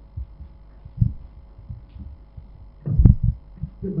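Handling noise on a microphone: a few low thumps, the loudest a cluster about three seconds in, over a steady faint electrical hum.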